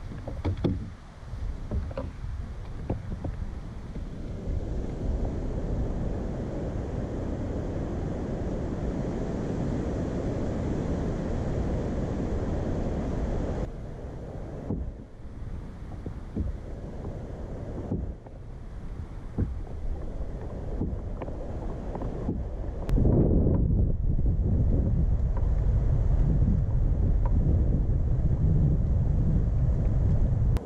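Wind buffeting the microphone over water sounds from a kayak moving along, turning much louder about 23 seconds in.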